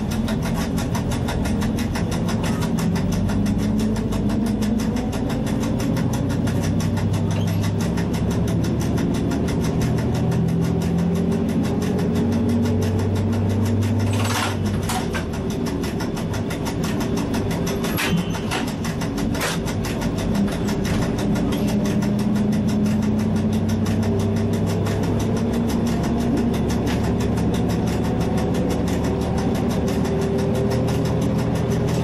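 Diesel railcar engine running steadily as the train travels, heard from the driver's cab, its engine note shifting up and down. A few sharp clicks come about halfway through.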